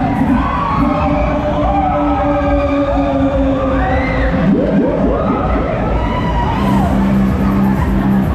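Loud fairground ride music with a steady bass line, with riders cheering and shouting over it; a burst of many overlapping screams rises about halfway through.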